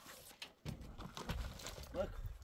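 A few light knocks and scuffs of a plastic bucket being handled and passed up onto a roof, with a low rumble from under a second in.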